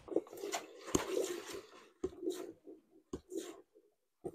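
Rustling of a nylon jacket and shuffling movement in irregular bursts, with one sharp knock about a second in.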